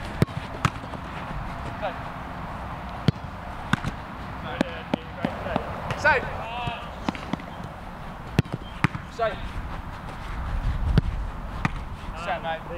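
Football goalkeeping drill: a footballer's ball being struck and saved, heard as sharp, separate thuds of ball on boot, gloves and artificial turf at irregular intervals. Short shouted calls come in between the thuds.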